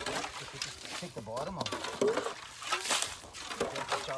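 People talking in low, short bits, with a brief rush of noise about three seconds in.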